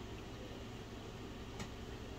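Quiet room tone: a steady low hum under a faint hiss, with one faint click about one and a half seconds in.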